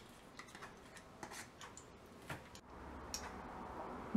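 Ghee melting in a heating frying pan: faint scattered crackles and ticks. A faint low steady hum comes in about three seconds in.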